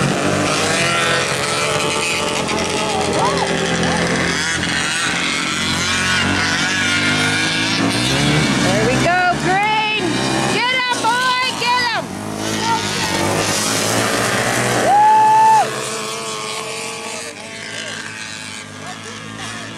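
Several small racing kart engines running in a race, their pitch rising and falling as they accelerate and pass, with voices in the background. Near the end, a loud, steady high-pitched tone sounds for about half a second.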